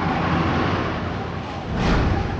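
Anime fight-scene sound effects: a steady rushing noise with a low rumble, swelling into a louder whoosh near the end.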